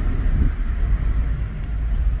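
Steady low rumble of a car driving slowly, heard from inside its cabin: road and engine noise.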